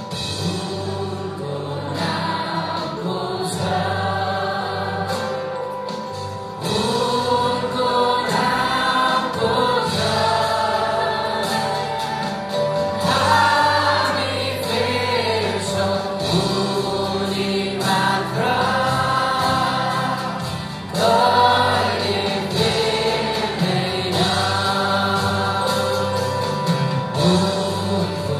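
Live Nepali Christian worship song: women and a man singing together into microphones over acoustic guitar and drums. The music steps up in loudness about seven seconds in and again near the end.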